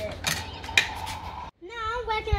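Plastic clicks and creaking from a toy vehicle's bonnet being pushed shut by hand, with two sharp clicks in the first second. The sound cuts off suddenly about one and a half seconds in.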